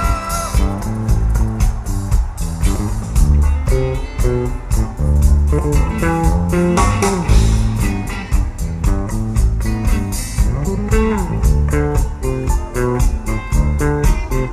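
Live rock band playing a guitar-led passage without lead vocals: several electric guitars trading riffs over bass and drums, with a steady cymbal beat.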